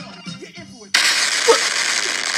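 Faint TV show music, then about a second in a sudden loud burst of hissing noise, a crash sound effect for the computer cutting out, lasting about a second and a half and stopping abruptly.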